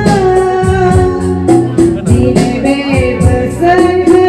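A woman singing a gospel song into a microphone, holding long notes, over amplified backing music with a steady beat.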